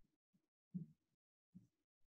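Near silence: room tone, with two faint, brief low sounds, one under a second in and one about a second and a half in.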